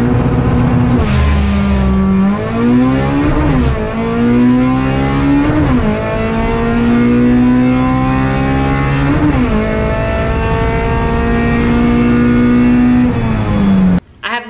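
K20-swapped Honda Civic four-cylinder engine, with intake, headers and exhaust, at full throttle on a drag-strip pass, heard inside the cabin. The pitch climbs in each gear and drops sharply at every upshift, four shifts in all, the last about two-thirds of the way through, followed by a long pull in the top gear.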